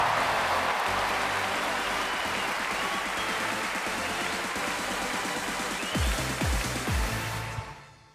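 Audience applause over upbeat music with a bass beat, after a speech ends. Several heavy bass thumps come about six to seven seconds in, then the sound fades out near the end.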